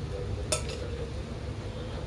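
Steady low background hum with a single light tap of a dish about half a second in.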